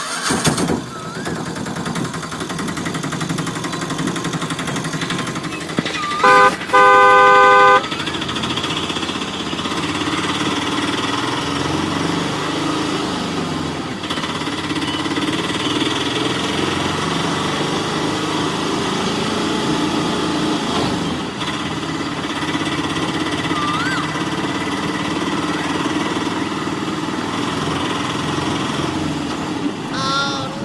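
Steady truck engine running, with two horn honks about six to eight seconds in, the second one longer.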